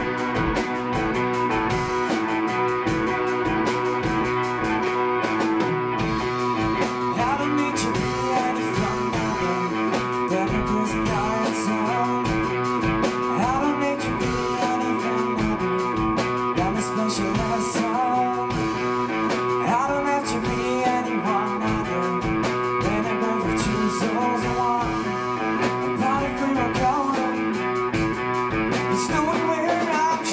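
Rock band playing live: drum kit, electric guitars and bass guitar in a steady rock groove, with a male voice singing from about seven seconds in.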